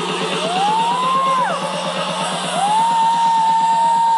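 Electronic dance music played loud over a concert sound system and heard from within the crowd: a rapid, even pulsing beat under a high tone that glides up, holds and falls away twice.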